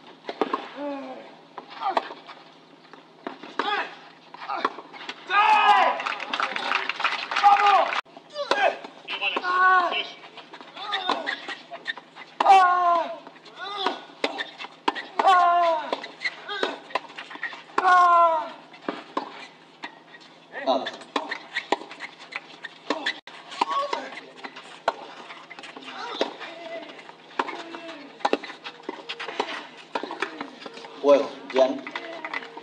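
Voices, short and falling in pitch in bursts, with sharp knocks of a tennis ball being struck during rallies.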